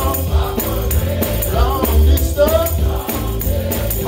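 Live gospel music: a male lead singer on a microphone with choir voices, over a heavy bass and drums keeping a steady beat, with tambourine-like percussion and hand clapping.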